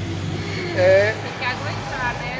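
Brief voices in a short pause between talk, over the steady low drone of a nearby motor vehicle engine that stops near the end.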